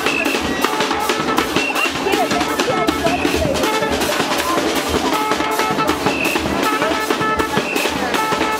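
Live carnival drum band: snare drums and a bass drum playing a steady, driving rhythm, loud and dense throughout.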